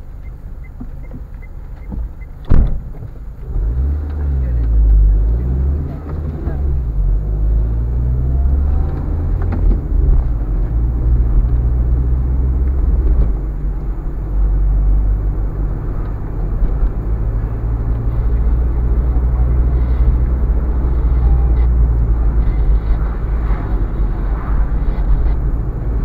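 Car engine and road noise while driving. A sharp knock comes about two and a half seconds in, then the engine speeds up with its pitch rising and falling over a few seconds before settling into a steady low drone.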